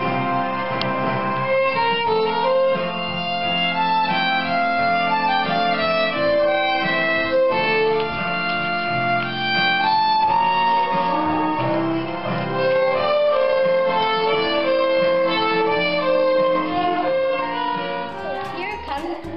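Two violins playing a duet, a bowed tune of held and moving notes.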